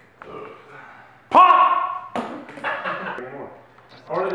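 A person's loud shout about a second in, starting with an upward slide and held briefly, then indistinct voices.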